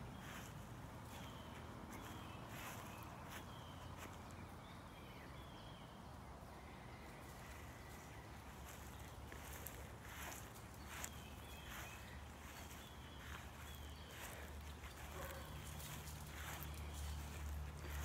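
Faint outdoor ambience: soft, scattered footsteps on grass and a few short, high chirps, over a low wind rumble on the microphone that grows stronger near the end.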